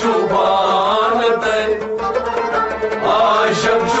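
Male voices singing a Kashmiri Sufi kalam in long, held, wavering notes, accompanied by a tumbaknari clay pot drum and a plucked stringed instrument.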